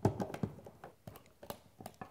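Screwdriver tightening the screw of an electrical outlet's cover plate: a scattering of small clicks and scrapes, with a sharper click about a second and a half in.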